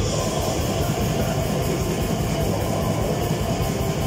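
Live metal band playing loud and without a break: distorted electric guitar over a fast, steady drum beat with cymbals.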